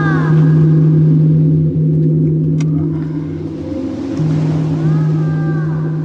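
Low, steady drone of a film trailer's soundtrack, dropping out briefly twice, with two gliding tones that rise and fall over it, one near the start and one about five seconds in.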